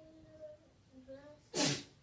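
A person's short, loud, hissing burst of breath about one and a half seconds in. Faint children's voices come before it.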